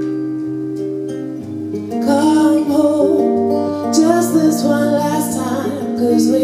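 A live band song with guitar and bass. A held chord fades over the first two seconds, then the playing picks up and a woman's voice comes in singing over it.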